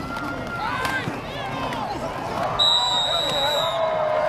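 Football stadium crowd with many voices shouting at once; about two and a half seconds in, a referee's whistle sounds one steady high note for over a second, blown to end the play.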